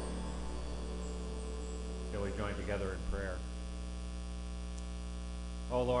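Steady electrical mains hum through the church's sound system, with the last of the music dying away at the very start and a few spoken words about two seconds in.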